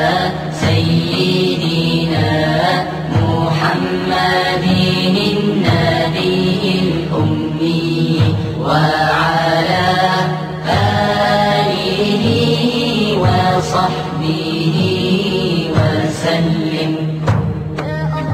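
Islamic devotional chant (a salawat on the Prophet) sung in long, drawn-out melismatic phrases over a steady low drone.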